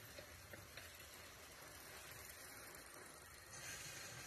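Near silence: a faint steady hiss, with a few soft clicks in the first second and the hiss swelling slightly near the end.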